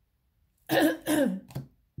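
A woman clearing her throat twice in quick succession, starting a little past halfway, because her throat is feeling weird.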